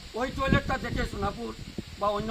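A man speaking, with a low rumble underneath.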